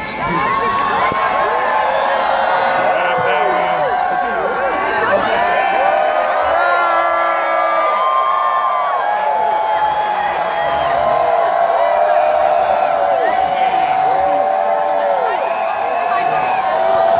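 Large crowd cheering and whooping without a break, many voices overlapping in long rising-and-falling calls.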